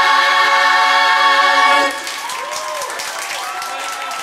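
A group of voices holds a final sung chord, which cuts off just under two seconds in. Then come excited shouts and cheers with some scattered clapping.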